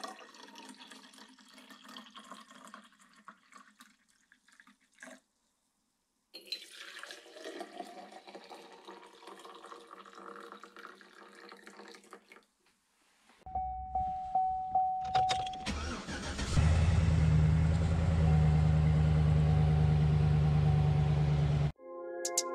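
Hot coffee poured into insulated tumblers, twice, the second fill rising in pitch as the tumbler fills. About two-thirds of the way in a pickup truck's engine is started, then runs loud and steady at idle until it cuts off just before the end.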